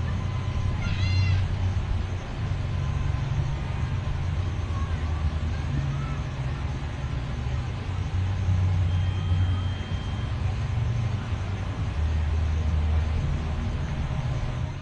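Outdoor ambience: a low rumble that swells and fades every few seconds, with a short high chirp about a second in and a thin steady whistle for about a second near the ten-second mark.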